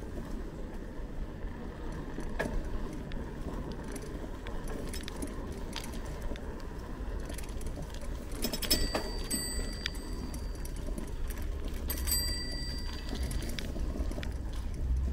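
Bicycle rolling over a concrete lane: low rumble of tyres and wind on the microphone, with scattered rattles and clicks from the bike. Two brief metallic rings come through, one just past the middle and another near the end.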